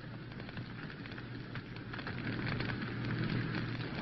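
Car running along the road heard from inside the cabin: a steady rushing noise with a low hum and a light crackle, slowly getting louder.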